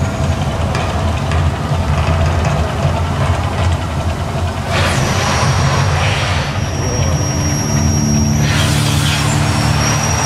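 Mirage volcano show's eruption: a deep steady rumble, with sudden surges of rushing hiss about five seconds in and again near the end as the gas flames shoot up.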